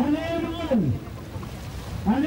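Canoe paddlers' chanted call: one long voiced shout that rises then falls in pitch, lasting under a second, the same call coming round again about every two seconds to keep the stroke. Under it, a steady rush of water and wind.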